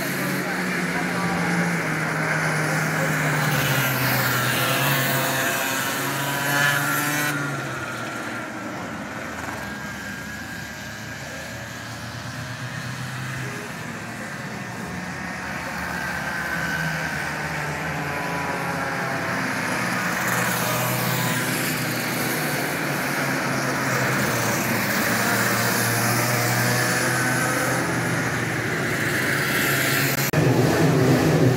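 Racing kart engines lapping a circuit, the engine note rising and falling in pitch as karts pass. It fades about a third of the way in and builds again toward the end.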